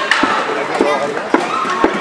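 Roller hockey sticks knocking against the ball and against each other in a scrum: four sharp knocks about half a second apart, with voices calling underneath.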